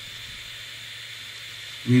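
Steady background hiss with a faint high-pitched tone running under it, and no distinct rustle or knock.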